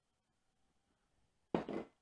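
Near silence, then about one and a half seconds in a single sudden thunk as a filled dish is set down on a wooden cutting board.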